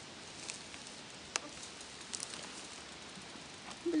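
Quiet outdoor background with a few faint, short ticks and one sharper click about a second and a half in.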